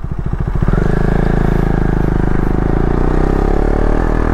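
KTM Duke 250's single-cylinder engine accelerating the bike away from low speed. At first the separate firing pulses can be picked out, then under more throttle about a second in it becomes a louder, steady pull.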